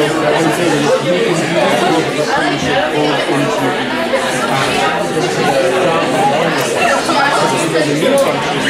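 Many students talking at once in a lecture hall: steady overlapping chatter with no single voice standing out.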